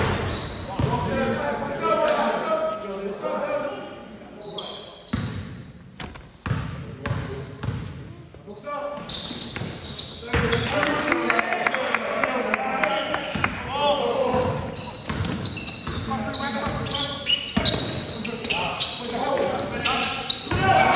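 Indoor basketball game: the ball bouncing on the court floor, sneakers squeaking and players calling out, echoing in a large sports hall. It gets busier and louder about halfway through as play moves on.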